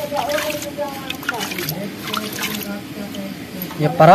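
A hand mixing flour and water into dough in a steel bowl, with scattered soft clicks from the wet mix and the bowl, while voices talk at moderate level over it.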